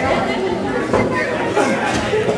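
Overlapping voices of several people talking at once, with no other sound standing out.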